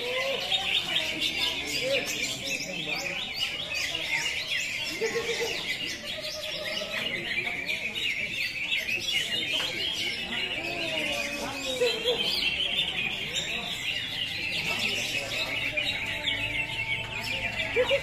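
Many caged green leafbirds (cucak hijau) singing at once: a dense, continuous high-pitched chatter of rapid chirps and trills.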